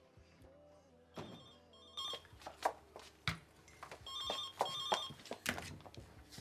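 Cordless home telephone ringing: an electronic warbling ring in short repeated bursts, with a few knocks in between.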